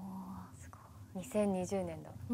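Quiet women's voices reacting: a short held hum at the start, then a brief murmured exclamation in the second half.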